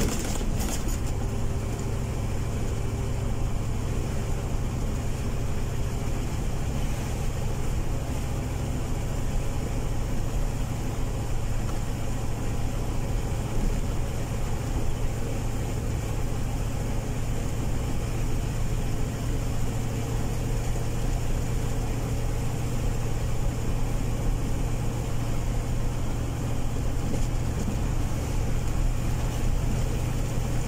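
Car driving steadily along a highway, heard from inside the cabin: a steady low engine hum mixed with road and tyre noise.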